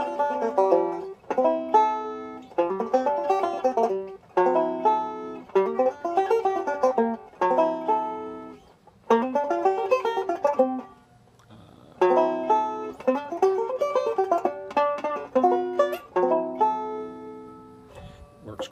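Five-string resonator banjo picking short melodic phrases from a B-flat major (G minor) pentatonic shape over a D9 chord. The phrases are separated by brief gaps, with a longer pause a little past the middle.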